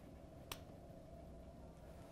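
A single sharp click about half a second in, then near silence: a spring-loaded, push-activated safety lancet firing as it is pressed firmly against a fingertip to prick it for a blood sample.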